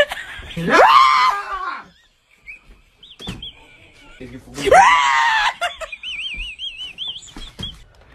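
Startled screams from people being scared, twice. A yell that rises sharply in pitch comes about half a second in, and a second yell comes near the middle.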